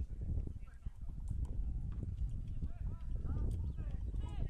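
Footballers' shouts on the pitch during play, loudest in the second half, over a steady low rumble, with a few short knocks.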